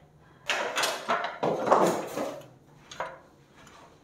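Aluminium stepladder being handled and moved, scraping and knocking for about two seconds, then a single click about three seconds in.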